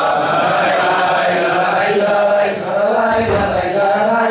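A man singing an improvised Basque verse (bertso) unaccompanied into a hand microphone, in one long unbroken line with the pitch wavering.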